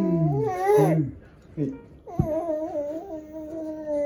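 A baby humming a long, wavering "mmm" twice while eating, with a sharp click about two seconds in.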